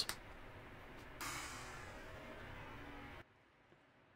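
Faint, even background hiss of room tone with no distinct event. It steps up a little just over a second in, then cuts to dead silence about three seconds in.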